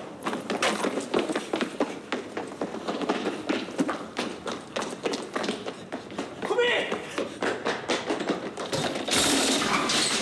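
Running footsteps with repeated thuds and taps, and a brief voice sound about two-thirds of the way through. Near the end comes a louder rush of noise as cardboard boxes are knocked over.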